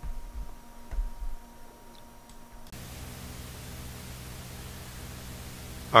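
A quiet stretch, then about three seconds in a steady hiss with a low hum begins, from the warmed-up Drake L-4B linear amplifier running, its cooling blower going.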